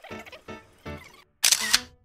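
Soft background music with evenly spaced piano-like notes, about two a second. It is interrupted about one and a half seconds in by a loud, brief camera-shutter click sound effect, then the notes go on.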